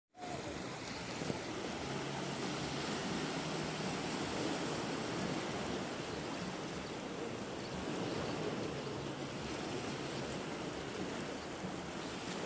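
Small sea waves washing in over sand and against the rocks of a boulder seawall: a steady rush of surf that swells and eases.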